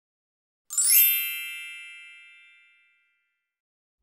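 A single bright, bell-like chime sound effect that strikes sharply a little under a second in and rings away over about two seconds.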